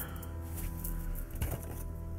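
Soft background music with steady held notes. A single faint clink of tools being moved in a metal tool box comes about one and a half seconds in.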